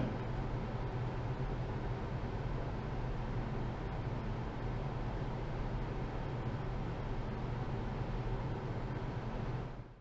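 Diesel pickup truck driving, heard from inside the cab: a steady low engine hum under even road and cab noise, fading out near the end.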